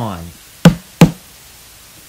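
Two sharp, loud knocks about a third of a second apart over a steady hiss of TV static, just after a voice trails off on 'on'.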